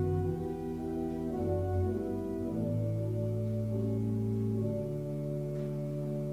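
Organ playing the introduction to a congregational hymn, slow sustained chords that change every second or so.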